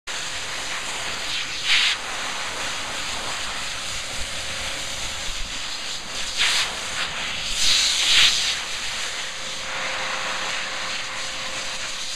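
A dog grooming dryer (high-velocity blower) blowing air through a black dog's coat: a steady hiss with a thin motor whine. The hiss surges louder briefly near 2 seconds, at about 6.5 seconds and around 8 seconds, as the nozzle comes closer.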